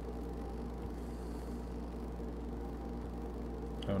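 Steady low electrical hum with a faint even buzz of overtones, unchanging throughout: the background tone of the recording, with no distinct events.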